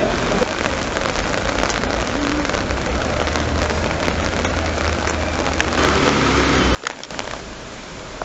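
Steady rain falling on wet paving stones. It cuts off abruptly near the end, leaving fainter street noise.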